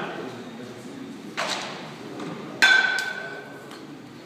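A baseball bat hits a pitched ball about two-thirds of the way in: a sharp metallic ping that rings briefly before fading. A softer, duller thud-and-rustle comes about a second earlier.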